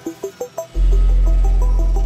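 Electronic bass music: the deep sustained sub-bass cuts out at the start, leaving a run of short plucked synth notes, then comes back in about three quarters of a second in under the notes.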